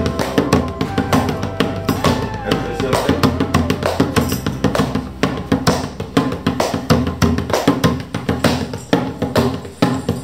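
Several djembes played with bare hands in a group, a dense run of overlapping strokes throughout. Voices sound over the drumming in the first few seconds.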